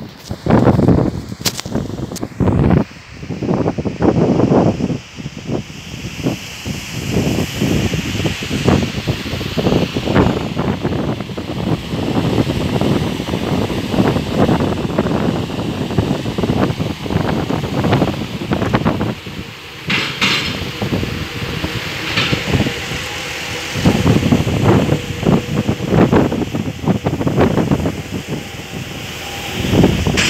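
Wind buffeting the microphone in irregular gusts: a low rumble that surges and drops every second or so.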